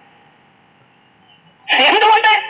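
Faint steady hiss of a speech recording during a pause between sentences. A man's voice resumes speaking Malayalam about a second and a half in.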